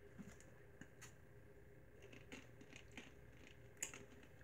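Near silence: a faint steady hum with a few faint clicks as a plastic soda bottle is handled, the sharpest click shortly before the end.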